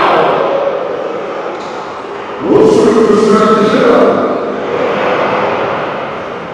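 Voice clip distorted by editing-software audio effects into unintelligible, warbling stacked tones. It jumps louder with a rising glide about two and a half seconds in, then fades slowly.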